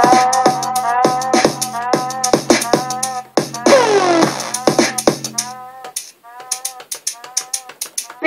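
Electronic music played live by triggering soundpack samples on a Launchpad pad controller: a fast, clicky beat with short repeated synth stabs over a low bass, and a falling pitch sweep about four seconds in. Near six seconds in the bass drops out and it thins to sparser stabs and clicks.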